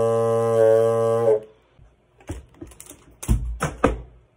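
A bassoon bocal and reed fitted to a clarinet body, playing one held low note that stops about a second and a half in. Scattered knocks follow, ending in two loud thumps near the end, as the instrument or camera is handled.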